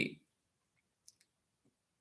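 Near silence with two faint clicks about a second in.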